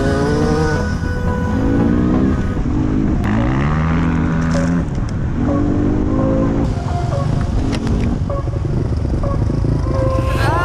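Enduro motorcycle engines revving up through the gears and holding steady speed on a dirt track, with background music mixed over them.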